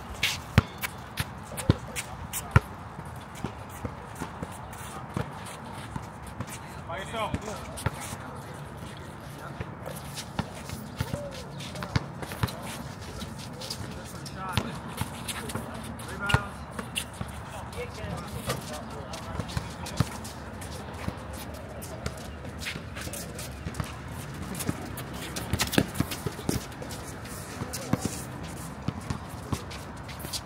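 Basketball bouncing on an outdoor hard court, sharp bounces scattered irregularly throughout, with footsteps and players' voices calling out now and then.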